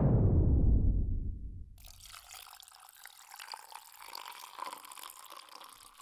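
Beer poured from a can into a glass, foaming and fizzing with a steady hiss. It opens with a loud low rumble that dies away over about two seconds before the fizzing hiss takes over.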